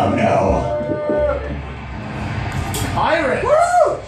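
A held musical note ends about a second in, leaving a steady low hum. Near the end a pitched, voice-like call glides up and down twice.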